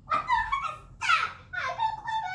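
A child's high-pitched squealing and whining vocal sounds in three short bursts, the middle one a steep falling squeal about a second in.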